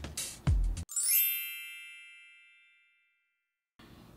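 A single bell-like ding, a struck chime that rings out and fades away over about two seconds, as if from a timer.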